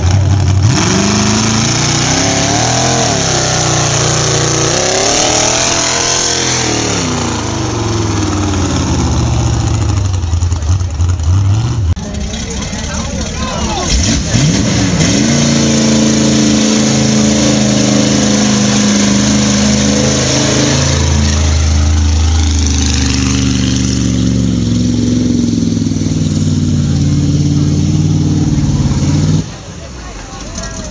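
Mud-bog truck engines revving hard at high throttle while running through a mud pit, the pitch climbing and dropping with the throttle. After a cut about 12 s in, a second truck's engine comes in with a rising rev, then runs at a steadier pitch.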